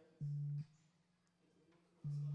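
A low, steady electronic buzz tone of constant pitch that sounds for about half a second and cuts off abruptly. A second identical buzz starts right at the end.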